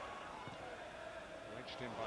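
Football match on television playing quietly: a commentator's voice over a steady haze of stadium crowd noise.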